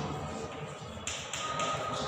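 Chalk tapping and scraping on a chalkboard as words are written, with a few quick strokes close together from about a second in.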